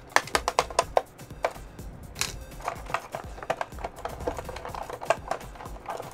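Plastic clicks and rattles of a Transformers action figure being worked out of its clear plastic packaging tray: a quick run of clicks in the first second, then scattered ones. Soft background music runs underneath.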